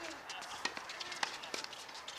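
Scattered sharp knocks and taps of tennis on outdoor hard courts: ball strikes, bounces and shoe steps, irregular and several a second, with a brief voice near the start.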